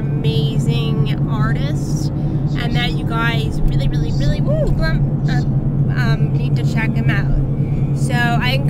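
Steady low drone of a car's engine and road noise heard inside the cabin, under a woman's talking.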